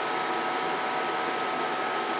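Steady hiss of a CB linear amplifier's cooling fan running, with a faint steady high whine through it.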